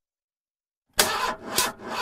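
A car engine being cranked and sputtering, starting about a second in with uneven dips, as the car runs out of gas.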